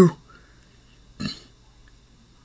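A man's voice ending a word, then about a second later one brief low throat noise from a voice.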